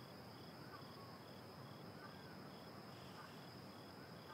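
Faint crickets chirping: a short high chirp repeating a few times a second over a steady high trill.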